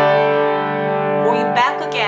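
Piano playing slow, held chords. One chord rings on through the first part, and the next comes in about one and a half seconds in.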